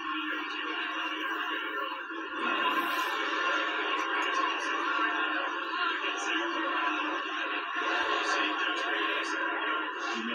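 Television broadcast audio playing through a TV's small speakers: a steady, even wash of sound with no bass and no sudden events.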